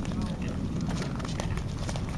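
Ice skate blades on natural outdoor ice, with irregular clicks and scrapes as skaters stride past, over a steady low rumble. Voices of people on the ice can be heard faintly.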